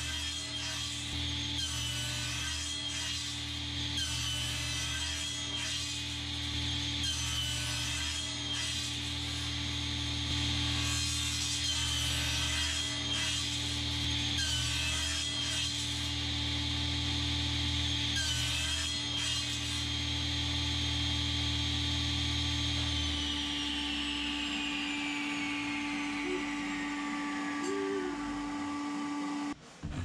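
SawStop table saw running and cutting a block of oak. About three-quarters of the way through it is switched off, and its whine falls steadily in pitch as the blade coasts to a stop.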